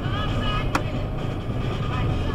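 Car driving, heard from inside the cabin: a steady low engine and road rumble. A single sharp click comes about three quarters of a second in.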